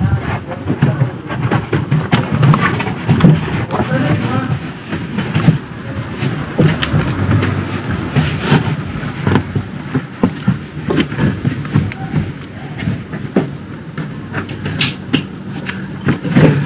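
Floor mat being pushed and pressed into a VW Transporter's cab footwell, with irregular rustling, scuffing and light knocks as it is worked into place.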